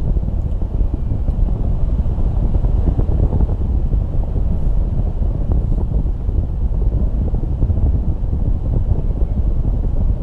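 Airflow of paraglider flight buffeting the camera's microphone: a loud, steady, low rush of wind noise.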